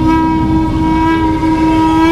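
One long held note closing a devotional song: a single steady pitch with many overtones, dying away just after the end.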